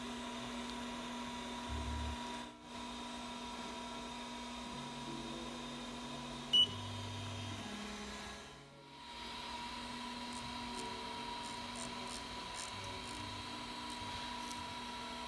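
3D printer fans and electronics humming steadily with a constant whine. Short low hums come from the Z-axis stepper motor as the bed height is jogged during bed levelling. One short, sharp, high beep from the printer's LCD controller comes about six and a half seconds in.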